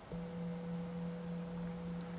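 Tibetan singing bowl struck once, then ringing steadily with a deep hum and a clear higher tone above it. It marks the end of a short silent meditation.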